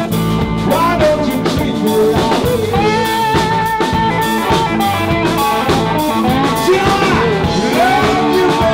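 Live blues band playing: electric guitar and drum kit with a male singer, a steady beat under held, bending notes.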